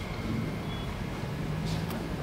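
Steady low rumble of road traffic heard from indoors, with a faint short high beep about a third of the way in. A light clink of a metal spoon against the cast iron skillet comes near the end.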